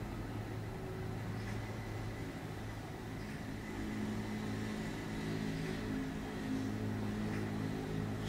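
A steady low mechanical hum of several held pitches, like an engine running, growing a little louder about halfway through, with a few faint light scratches of a brush working on paper.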